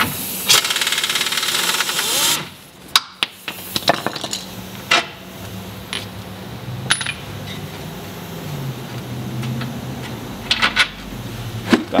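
Pneumatic impact wrench hammering for about two seconds as it backs out a 22 mm lower control arm bolt, then scattered metallic clicks and clinks as the loosened bolt and tools are handled.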